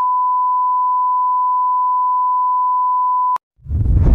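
A steady electronic beep, a single pure tone held unchanged for over three seconds, then cut off abruptly. About half a second later, a loud low rumbling boom begins.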